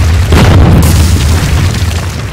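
Cinematic logo-intro sound effect: a deep, sustained booming rumble with a crashing impact about a third of a second in, fading near the end.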